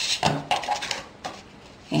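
A few light clicks and knocks as a hard plastic tape-runner glue applicator is set down on a cutting mat and paper is handled.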